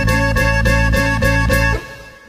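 Instrumental close of a corrido: the band plays a held chord with quick, even strummed strokes, about five a second, which stops shortly before the end.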